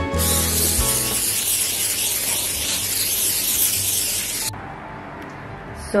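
Aerosol cooking-oil spray can hissing in one steady spray for about four seconds, cutting off sharply. Background music with a beat plays under the first second.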